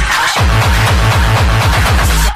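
Frenchcore hard dance music: a fast, distorted kick drum hits on every beat, each hit sweeping down in pitch. The kick drops out for a moment at the start under a swell of brighter noise, then comes back in.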